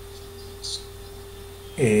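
A steady electrical hum, a single unchanging tone, from the recording or sound system during a pause. A voice begins speaking near the end.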